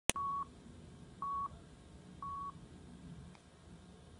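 A sharp click, then three short electronic beeps at one steady pitch, evenly spaced about a second apart, over faint hiss.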